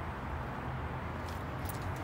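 Steady low background hum and hiss, with a few faint clicks in the second half.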